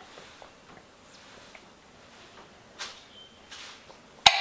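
Drinking from a glass mason jar: faint swallows and small clicks, with two brief, slightly louder sounds about three quarters of the way through as the jar comes down.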